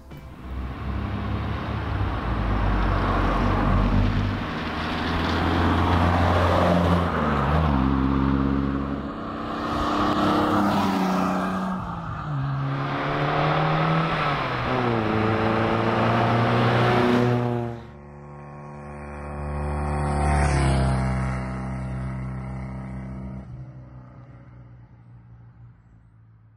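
Car engine accelerating hard, its pitch climbing and dropping back at each gear change several times. It then eases off, swells once more as the car passes, and fades away near the end.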